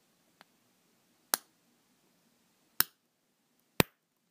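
A 3D-printed ABS peg being squeezed by hand into a tight-fitting hole in a second printed cube gives a faint tick and then three sharp clicks a second or so apart. The clicks are the printed layers ratcheting past each other as the joint forces together and locks.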